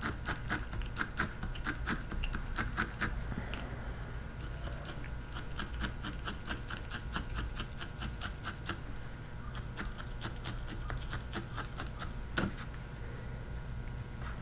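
Felting needle stabbing wool over and over in quick, even strokes, about four a second, each a short soft tick as the barbed needle punches through the fibre into the pad beneath. One sharper click comes near the end.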